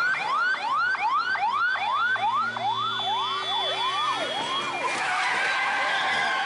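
Ambulance siren in a fast yelp, its pitch sweeping up and dropping back about three times a second. About five seconds in, the yelping gives way to a denser, noisier mix of tones.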